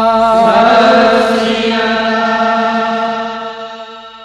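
Sikh shabad kirtan music ending on a long held chord with chanting voices, fading out near the end.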